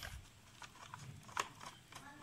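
Screwdriver turning a motorcycle battery's terminal screw: faint metal clicks and scrapes, with one sharper click about a second and a half in.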